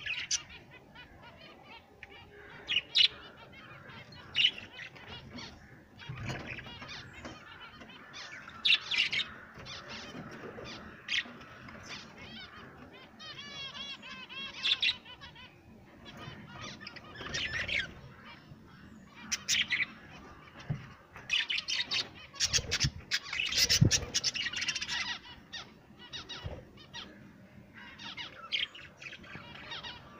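Caged budgerigars chirping and chattering in short, repeated high calls, with a warbling run about halfway through and a busier burst of calls a little after two-thirds of the way. A few dull thumps come in between.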